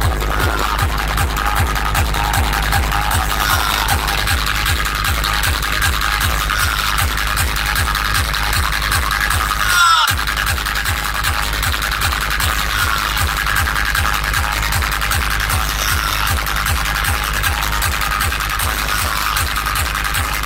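Loud electronic dance music with heavy bass and a steady beat, played through a large street DJ sound system of stacked bass cabinets. The bass cuts out for a moment about halfway through.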